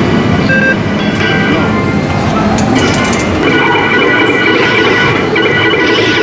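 Loud arcade ambience of electronic game music and beeps, with a steady layered electronic tone pattern joining about halfway in.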